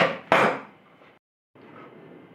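Two sharp knocks close together as a metal tube is handled against a tabletop, then the sound drops out abruptly for a moment.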